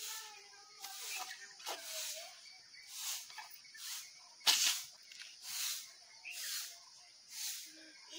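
Short breathy hissing sounds from a person, repeating about once or twice a second, one sharper and louder about halfway, with a small child's faint voice now and then.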